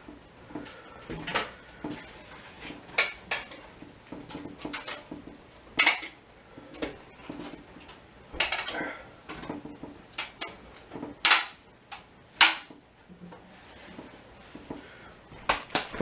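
Clinks and clanks from a stainless-steel pot still and its metal fittings being handled as it is put back together on the stove. The knocks come irregularly, about a dozen and a half, and a few ring briefly.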